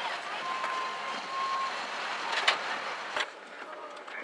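SUV driving slowly across a parking lot: a steady rush of engine and road noise, with a thin, steady high tone for about a second near the start and a click a little past the middle. Near the end the noise drops away suddenly to a quieter hush.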